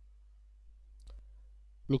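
Quiet room tone with a low steady hum and a single faint click about a second in.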